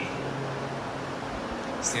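A steady low mechanical hum with an even hiss underneath; a man starts speaking near the end.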